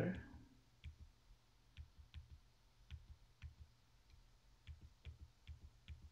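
Faint keystrokes on a computer keyboard: about fifteen light, irregularly spaced clicks as a short command is typed.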